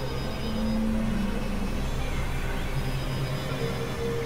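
Experimental synthesizer drone music: several sustained, layered tones held over a low rumbling noise. A lower tone swells in for about a second shortly after the start.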